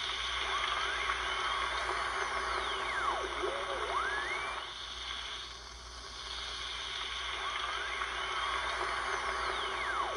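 A steady hiss with thin whistling tones that glide slowly up and then swoop down in pitch, the same pattern of glides coming round again about halfway through; an electronic-sounding intro texture rather than playing instruments.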